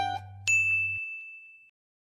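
The last notes of background music die away, then a single bright ding about half a second in rings on one high tone and fades out within about a second.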